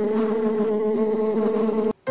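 Honeybee buzzing: a steady, slightly wavering hum that cuts off abruptly near the end.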